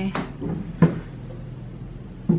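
Two short clicks, the second, a little under a second in, sharper and louder than the first.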